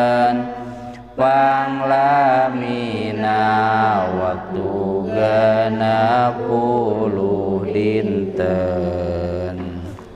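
A man chanting solo in long, held, slightly wavering melodic phrases, with a short pause about a second in.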